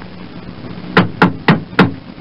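Four quick knocks on a door, about four a second, starting halfway through.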